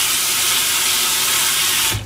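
Water from a single-lever kitchen faucet running steadily onto dishes in a stainless steel sink as they are rinsed by hand. The flow cuts off suddenly at the very end as the lever is shut.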